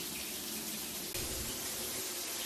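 Water from an overhead rainfall shower head running, a steady hiss of falling water, with a slight change in its tone about a second in.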